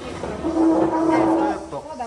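One loud, long call held on a single steady note for about a second, from a voice.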